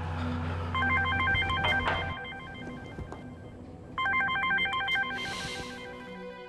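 Mobile phone ringtone: two bursts of a rapidly warbling electronic ring, the second starting about four seconds in, over soft background music.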